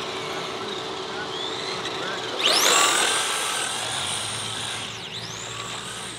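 Remote-control car's electric motor whining as it speeds off. The high whine rises sharply about two and a half seconds in and holds high. It dips sharply around five seconds in and climbs back up.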